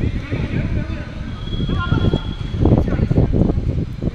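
Indistinct voices of players calling out during a small-sided football game on artificial turf, over a heavy, uneven low rumble on the microphone that grows louder near the end.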